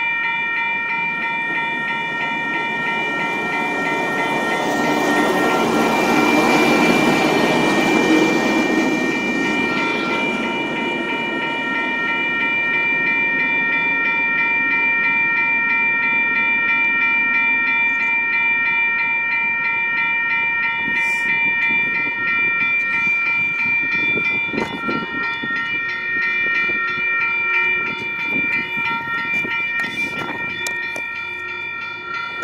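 Railroad grade-crossing bell ringing steadily with the gates down, while a rail vehicle rolls past, loudest about six to eight seconds in. A few knocks and clatters come near the end.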